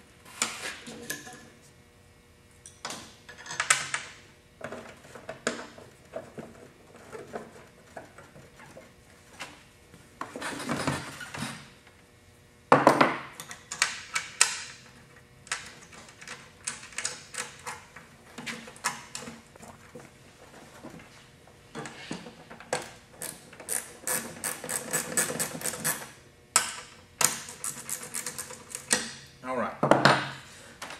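Burner mounting bolts on a gas forge being fastened with a wrench: scattered metal clinks and knocks, with runs of rapid clicking in the second half.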